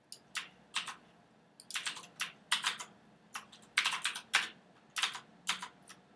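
Computer keyboard typing: keystrokes come singly and in quick irregular runs, with the densest runs about two and four seconds in.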